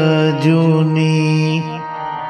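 Devotional shabad kirtan music: a sung line gives way to steady held notes, typical of a harmonium, with a sharp click about half a second in. The held notes drop in level near the end.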